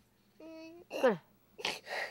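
A young boy crying: one short whimpering wail, held at a steady pitch for about half a second.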